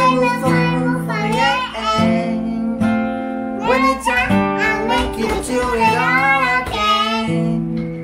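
A young girl singing a song with an acoustic guitar played alongside her, her high voice moving from note to note over held guitar chords.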